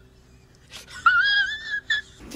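A man's high-pitched, wavering wheeze-like squeal lasting about a second, starting about a second in, followed by a brief second squeak near the end.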